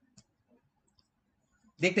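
A few faint, sharp clicks spaced out over a second or so, then a man's voice starts talking near the end.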